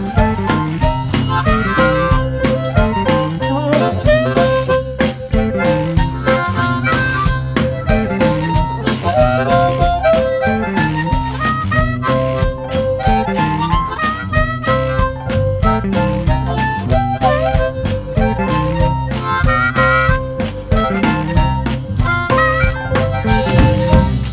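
Blues harmonica solo over a backing band of guitar, bass and drums, with the harp holding long notes between quicker phrases.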